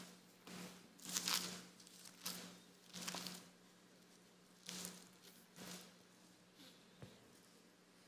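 Thin Bible pages rustling softly as they are leafed through, in a string of short, separate rustles, over a faint steady hum.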